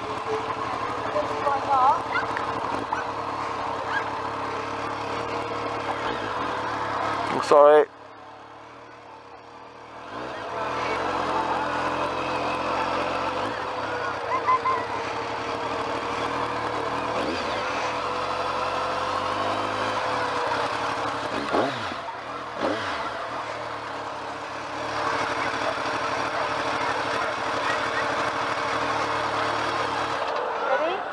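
BMW motorcycle engine running at low speed with wind and road noise on the helmet camera, over the chatter of people nearby. About eight seconds in, the sound suddenly drops away for a couple of seconds.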